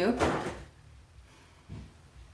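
A short rustling clatter, then a soft dull thump more than a second later: a cat knocking an object off.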